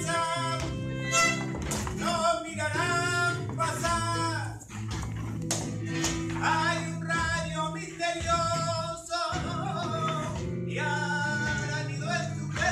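Flamenco music: a voice singing gliding phrases over acoustic guitar, with sustained low notes underneath and short breaks between phrases.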